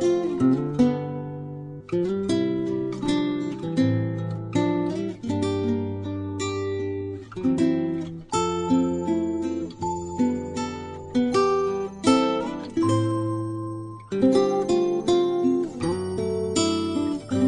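Background music: acoustic guitar playing plucked notes and chords in a steady rhythm, each note struck sharply and ringing away.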